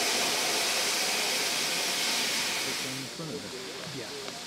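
Loud steady hiss of steam venting from two GWR Prairie tank locomotives standing under steam. It drops away abruptly about three seconds in.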